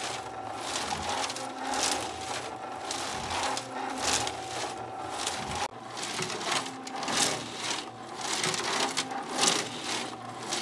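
An old steel pickup gas tank turning on a motorized rotisserie, with loose nuts and washers clattering irregularly inside it as it rolls, over a steady hum from the drive motor.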